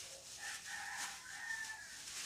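A rooster crowing faintly in the distance: one long drawn-out crow lasting about a second and a half. It comes with a light rustle of the plastic cape being handled.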